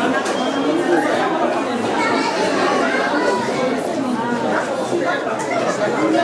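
Many people talking at once in a large hall, a steady hubbub of overlapping voices with no one voice standing out.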